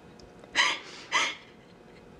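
A woman crying, two short sobbing breaths about half a second apart, each with a brief catch in the voice.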